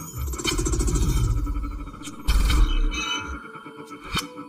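Electronic music playing back from a Reason session: deep sub-bass notes, one long and a shorter one about two and a half seconds in, under sharp clicks and fast rippling textures higher up.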